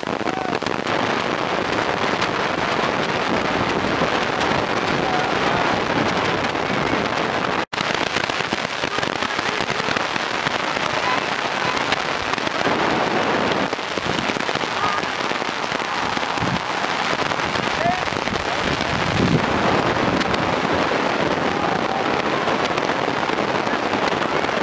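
Rugby match ambience: distant, indistinct shouting from players and spectators over a steady crackling hiss, broken by a brief dropout about eight seconds in.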